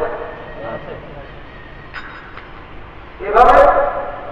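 A man preaching in Bengali into a microphone: a phrase trails off at the start, then a pause of about three seconds, and he speaks again near the end.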